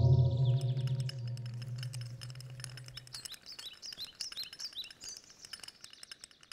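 Final electric guitar chord with an echo effect ringing out and fading away over about three seconds, while short rising bird chirps repeat several times a second throughout.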